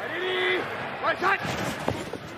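Voices shouting pre-snap calls at the line of scrimmage, one held call followed by shorter ones about a second in, over steady stadium crowd noise. There is a brief knock near the end.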